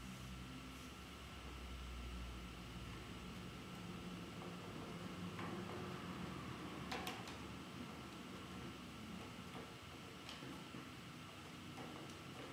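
Faint taps and clicks of a thin laser-cut wooden piece being pushed into the slots of a wooden laptop stand, with a sharper double click about seven seconds in as it snaps into place. A low steady room hum runs underneath.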